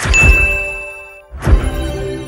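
Edited intro sound effects: a sharp hit with a bright, single-pitched ding that rings for about a second, the sound of a subscribe-button animation, then a second sudden hit about a second and a half in.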